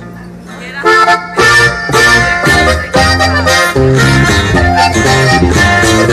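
Button accordion playing the quick opening run of a norteño corrido, entering about a second in, with low bass notes underneath.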